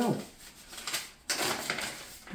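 Paper envelope rustling and crackling as it is torn open by hand, starting about a second in.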